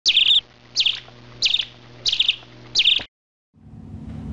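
Bird chirping: five short repeated calls about two-thirds of a second apart, each a quick high downward note followed by a rapid series of notes, cutting off suddenly about three seconds in. Soft music begins near the end.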